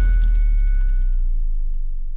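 Tail of a logo intro sting: a deep booming rumble slowly dying away, with two faint high ringing tones that fade out about one and a half seconds in.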